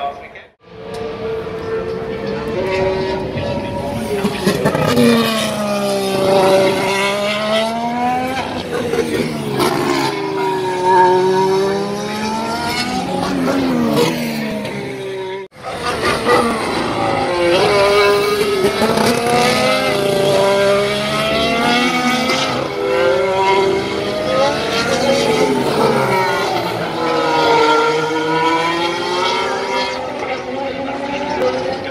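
Formula 1 cars' turbocharged V6 hybrid engines passing one after another through a slow corner. Each note falls as the car brakes and downshifts, then climbs again as it accelerates away, and at times several cars are heard together. The sound cuts out abruptly twice, once just after the start and once about halfway through.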